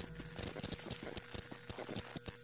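Electronic outro sound logo: faint regular ticking, then a few short, very high-pitched beeps beginning about a second in.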